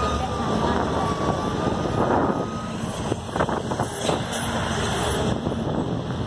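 Engine and road noise from inside a moving vehicle on a highway, a steady rumble throughout. A thin steady high tone sounds for the first couple of seconds, and a few sharp knocks come about three seconds in.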